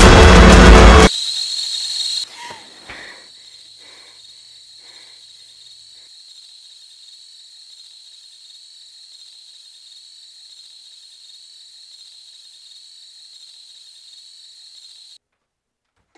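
Loud horror-film score cuts off abruptly about a second in. It leaves a faint, steady high-pitched ring that wavers slightly, with a few soft sounds in the first seconds after the cut. The ring stops suddenly near the end.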